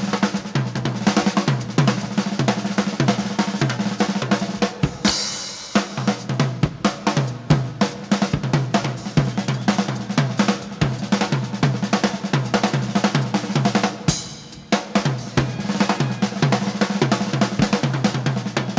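Live drum kit solo: fast, dense strokes on the snare and toms over the bass drum, with cymbal crashes about five seconds in and again about fourteen seconds in.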